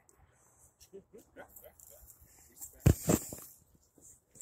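Two loud knocks about three seconds in, a fraction of a second apart: a radio-controlled rock crawler's wheels and body clunking down on the rocks.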